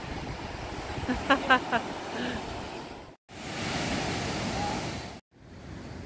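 Steady noise of ocean surf washing on the beach, with a few short vocal sounds about a second in. The sound cuts out abruptly twice, about halfway through and near the end.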